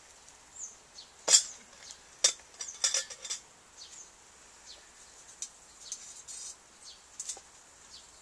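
Metal clinks and clanks as a metal pot is handled on a small homemade wood-burning stove made from a metal dish drainer. A sharp clank about a second in is the loudest, followed by several more knocks over the next two seconds and a few faint ticks after.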